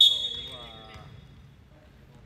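A sharp high-pitched whistle blast that starts suddenly and fades over about a second and a half, with a short voice calling out about half a second in, in a large gym.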